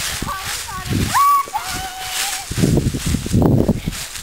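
Children's high-pitched wordless shouts and squeals as a plastic sled starts down a grassy slope, followed by a rough rustling scrape of the sled sliding over grass and dry leaves near the end.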